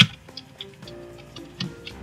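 Computer keyboard keystrokes typing a short command: a sharp key click at the very start, then a string of lighter, irregular key taps.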